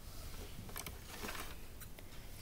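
A few faint clicks and light rustling of plastic Lego pieces being handled and fitted onto a build.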